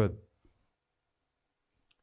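A man's voice finishing a word, then near silence during a pause, broken only by a faint click or two.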